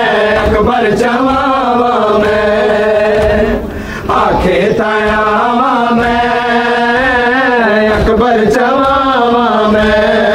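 Men's voices chanting a Muharram nauha (mourning lament) together in a repeated melodic line, loud and sustained, with a short break about three and a half seconds in before the chant resumes.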